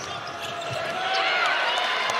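Basketball shoes squeaking on a hardwood court during live play, with short high squeals that grow busier about a second in, and a ball bouncing.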